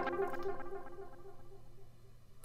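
Echoes of an arpeggiated synthesizer line trailing off through a filtered delay once the synth stops: the repeated notes grow steadily fainter until they are barely there.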